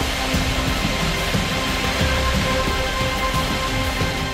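Background music of sustained held notes over a steady rushing noise with a low rumble underneath.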